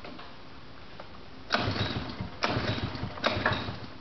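A small engine, plausibly the one driving the can crusher's hydraulic pump, cuts in about a second and a half in. It runs in loud, uneven surges, with three sharp onsets a little under a second apart.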